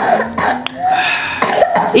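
A small child coughing and clearing his throat while eating, reacting as though the food were spicy.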